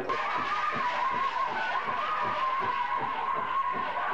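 Pow wow drum group singing a grand entry song: a high, held vocal line over a steady drumbeat.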